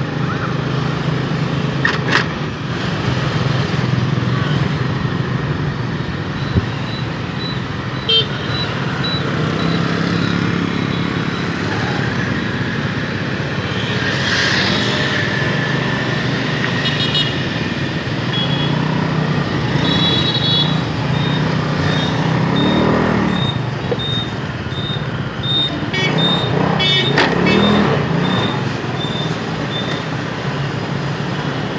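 Motorbike engine running with wind and the noise of surrounding street traffic, with short horn toots in the middle. In the second half a high beep repeats steadily, about once every three-quarters of a second.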